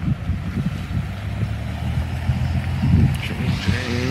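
Road traffic at a signalled intersection: a steady low engine rumble, with tyre hiss rising near the end as a vehicle approaches.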